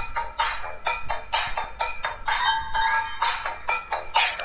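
Dancing cactus plush toy playing one of its built-in songs through its small speaker, electronic music with a steady beat.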